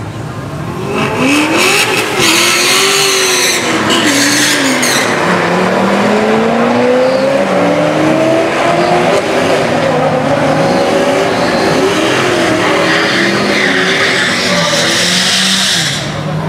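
A Chevrolet Corvette and a Mercedes-AMG launching side by side in a drag race about a second in. The engines rev hard with tyre squeal at the launch. Then they accelerate away, pitch climbing and dropping back at each gear shift several times over.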